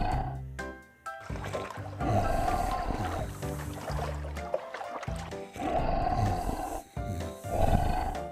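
Cartoon sound effect of sleeping T-Rexes snoring, a snore coming about every two to three seconds, over background music.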